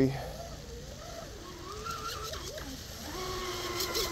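Distant whine of an RC catamaran boat's brushless electric motor out on the water. Its pitch wavers up and down with the throttle, then holds steady from about three seconds in.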